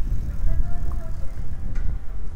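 Street ambience: a steady, uneven low rumble with faint distant voices.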